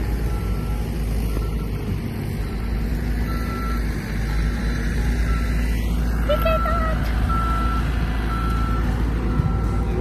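Back-up alarm of a Cat compact wheel loader beeping steadily, about once a second, over the low running of its diesel engine.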